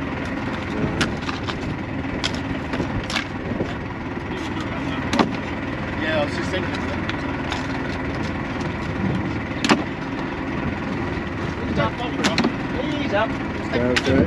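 Hand-shucking scallops with a knife: sharp clacks of the knife and shells, about half a dozen at uneven intervals, over steady background noise.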